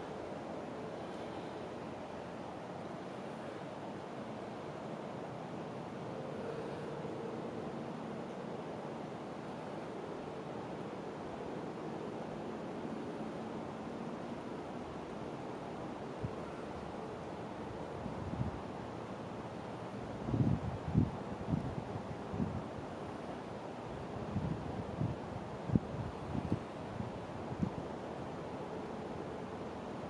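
Steady outdoor wind noise. Over roughly the last twelve seconds, irregular low thumps of wind buffeting the microphone break through it.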